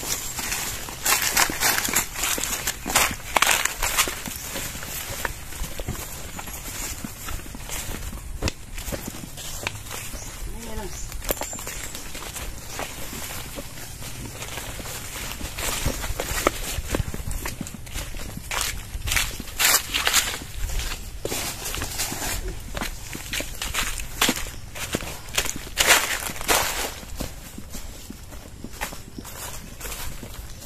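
Footsteps of people in rubber boots walking through grass and dry banana-leaf litter, an irregular series of crunching, rustling steps that grow louder in clusters near the start, in the middle and again about three-quarters through.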